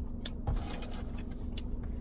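A person chewing food in a car, with a scatter of small sharp clicks and a soft knock about half a second in, over a steady low hum.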